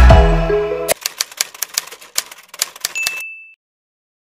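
Background music fading out, then a quick run of typewriter key clacks, about ten in two seconds, ending in a single short bell ding.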